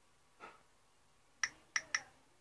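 Faint taps on a Samsung Galaxy Ace's touchscreen: one soft tick, then three short, sharp clicks in quick succession in the second half as the on-screen keyboard is used.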